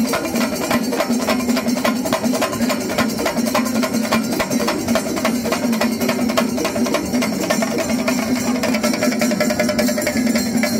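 Chenda melam: a troupe of chenda drummers beating their cylindrical drums with sticks in a fast, dense, unbroken rhythm, the drums ringing steadily under the rapid strokes.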